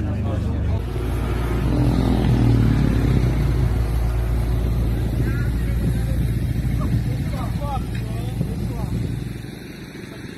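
Audi R8's engine running loudly, a deep rumble that fades away near the end.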